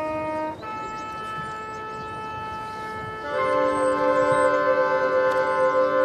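High school marching band's winds holding sustained chords: a quieter held chord, then a louder, fuller chord entering about three seconds in and holding.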